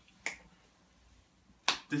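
A single short, sharp click, then a man's voice starts speaking near the end.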